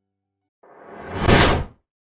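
A whoosh transition sound effect: a rushing swell that builds over about a second, then cuts off sharply.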